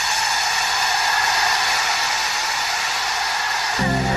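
Karaoke backing track of a Tamil film song in its instrumental intro: a steady, even hiss-like noise swell with faint sustained tones above it. Just before the end it cuts off as bass notes and a repeating beat come in.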